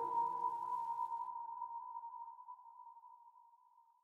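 The last note of an electronic dance track ringing out: a single held electronic tone fading slowly away after the final chord stops.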